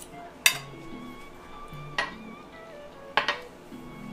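A fork clinking against a ceramic plate a few times: once about half a second in, again at two seconds, and twice in quick succession just after three seconds.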